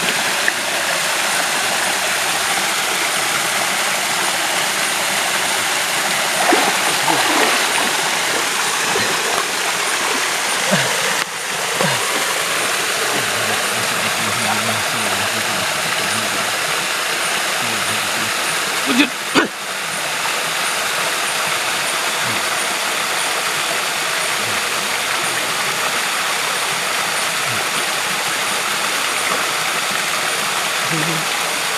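River water rushing steadily, a continuous hiss of flowing water, with two sharp knocks about two-thirds of the way through.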